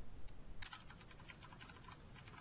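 Faint, rapid typing on a computer keyboard, a quick run of key clicks starting about half a second in.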